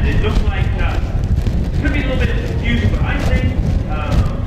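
Indistinct voices talking in short snatches over a steady low rumble.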